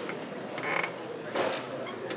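Two short creaks over steady lecture-hall room noise, the first about half a second in and the second near a second and a half.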